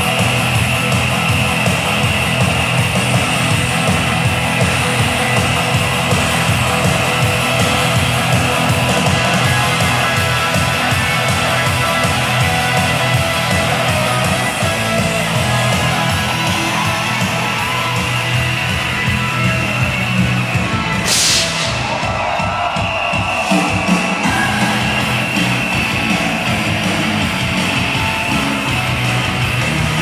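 Loud rock music with electric guitar playing steadily, with a short burst of hiss about twenty-one seconds in.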